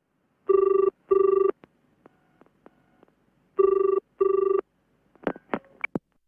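Telephone ringing tone in the British double-ring pattern, heard twice as the caller waits for an answer, each time two short steady rings. Near the end a few sharp clicks sound as the call is picked up.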